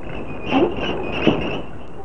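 Frogs croaking over a steady high insect trill, like crickets at night, with a few croaks standing out about half a second and again about a second and a quarter in.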